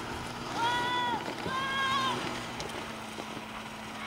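Snowmobile engine revved twice, each rev a short high whine of about half a second that rises, holds and drops, over a steady low engine hum.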